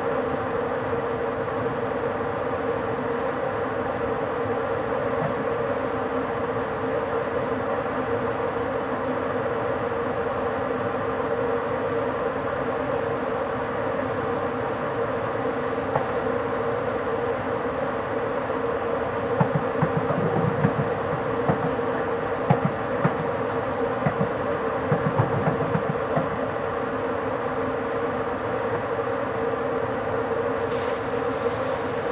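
ÖBB Intercity train running at about 80 km/h, heard from the driver's cab: a steady rolling noise with a constant hum. In the second half comes a run of sharp knocks as the wheels go over the track.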